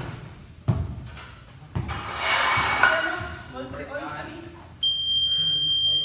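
Several thuds on the gym floor and players' voices, then a loud, steady, high-pitched electronic buzzer beep starts about five seconds in and holds for well over a second.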